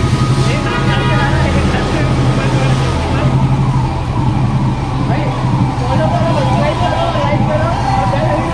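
Steady low hum of a motorcycle engine running at low speed, with several people's voices talking over it.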